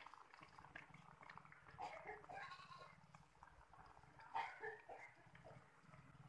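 Faint crackling of athirasam dough deep-frying in hot oil, with an animal calling twice in the background, about two seconds in and again about four seconds in.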